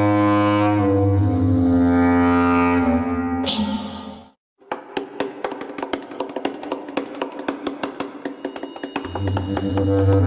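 Soundtrack music of a news explainer video: sustained low chords for about four seconds, a brief break, then rapid ticking percussion, with the chords coming back near the end.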